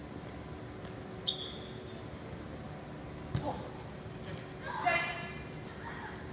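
Futsal ball kicked on an indoor pitch: a sharp knock about a second in and a harder kick about three seconds in. Near the end a short, high shout from a player rises above the background hum of the hall.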